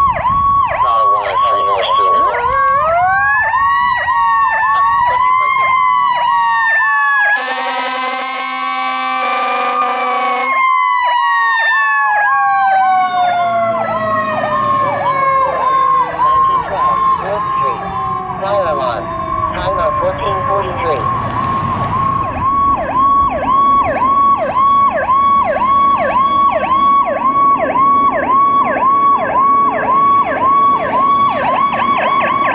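Fire engine's electronic siren yelping fast and steadily, with a mechanical siren winding up twice and then coasting slowly down in pitch. A long air-horn blast sounds over them for about three seconds, near the top of the wind-up.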